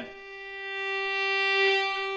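A single bowed violin note held dead steady in pitch, played without vibrato. It swells louder for most of its length and eases off slightly near the end.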